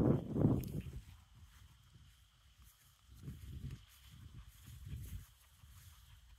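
Footsteps on grass and the rumble of a handheld phone being carried: a burst of rustling in the first second, then a few soft, irregular thuds.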